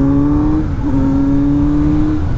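Kawasaki Z900 inline-four engine accelerating, its pitch rising, dipping briefly at an upshift under a second in, then climbing again. The bike is fitted with an Arrow aftermarket exhaust.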